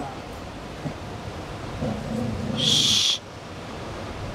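A person's short low hoot about two seconds in, then a loud, sharp hiss lasting about half a second that cuts off suddenly, like a forceful breath through the teeth, over a steady rushing background.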